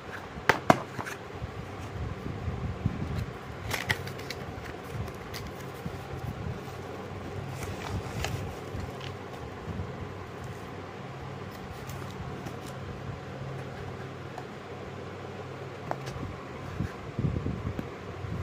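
Handling noise from a cardboard box and a plastic-wrapped soap dispenser: scattered clicks, taps and crinkles, the sharpest just under a second in and a cluster near the end. A steady low hum runs underneath throughout.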